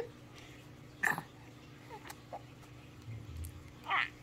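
Baby fussing with short whimpers, one about a second in and another near the end, as she starts to cry.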